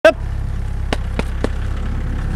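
Cattle shuffling in a pen over a steady low rumble. A brief loud call sounds right at the start, and three sharp knocks come about a second in.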